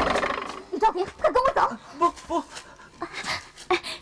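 A loud, noisy crash dies away in the first half-second. It is followed by a string of short wordless vocal sounds from a person, brief grunts and gasps that rise and fall in pitch.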